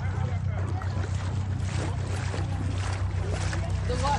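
Distant voices talking and calling over a steady low rumble.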